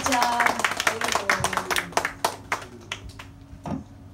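Small audience clapping after a song, thinning out to a few last claps over about three seconds. A voice calls out briefly at the start, and a low note from the band rings on underneath.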